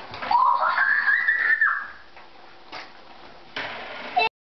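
A young child's high-pitched wordless squeal that rises, holds for about a second and then breaks off, followed by a soft rustle near the end.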